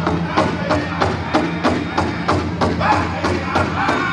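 Powwow drum group: several singers with a big drum struck in a steady beat of about three strokes a second.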